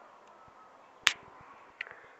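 A single sharp click about halfway through and a fainter tick near the end, over a quiet background.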